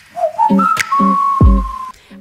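Short segment-intro music jingle: a whistled melody that slides up in two steps and then holds one long high note, over a bouncy bass line with a deep kick drum about one and a half seconds in.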